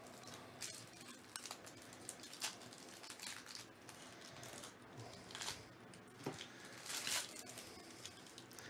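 Wrapper of a Bowman baseball card pack crinkling and tearing as it is opened by hand, then the cards being handled. Faint, scattered crackles and clicks, with a longer rustle about seven seconds in.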